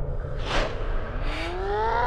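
Film soundtrack: a brief swish about half a second in, then a drawn-out tone rising steadily in pitch over a low rumble.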